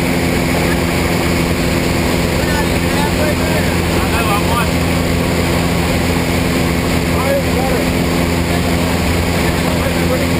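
Piston engine and propeller of a small single-engine plane droning steadily, heard from inside the cabin, with faint voices under it.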